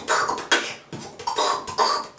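Beatboxing: mouth-made drum sounds, sharp hissy snare- and hi-hat-like hits about two a second, in a tiled shower stall.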